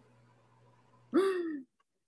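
A person's short, wordless 'huh' about a second in, its pitch falling away. Before it there is only a faint, steady electronic hum.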